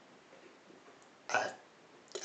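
A man's voice giving a short hesitant "a" about one and a half seconds into a pause in speech; otherwise only quiet room tone.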